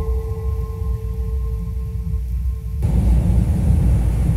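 Cinematic film soundtrack: a loud deep rumble under a single held note; the note stops a little under three seconds in and a broader rushing noise swells in its place.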